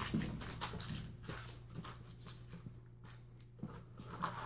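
Faint scattered taps and rustles of a person moving about and handling things, thinning out after the first second or so, over a steady low hum.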